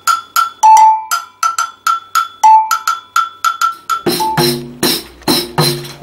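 A metal agogo double bell on a spring handle struck with a stick in a rhythm of quick, short strikes on the high bell, about four a second, with a lower, longer-ringing note from the other bell three times. About four seconds in, a pandeiro takes over: drum-head tones with bright jingle hits.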